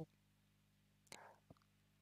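Near silence with a faint breath from a man about a second in, followed by a soft mouth click.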